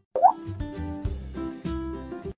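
Intro music with pitched notes over a bass line, starting after a brief gap with a short rising pop sound effect.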